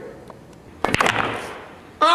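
Pool balls clicking against each other as they roll after the break: a quick cluster of three or four sharp clicks about a second in.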